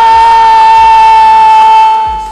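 A football TV commentator's long, drawn-out shout of "goal!", held as one loud call at a steady high pitch, over background music with a steady beat.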